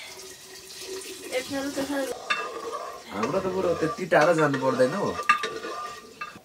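Water poured from a metal kettle into an aluminium pot for about two seconds, then a few clinks of a spoon against the pot as it is stirred.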